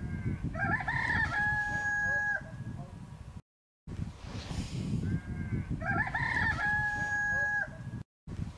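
A rooster crowing twice, about four seconds apart: each crow a short broken rise ending in a long held note. The sound cuts out briefly between the two crows, and a low rumble runs beneath.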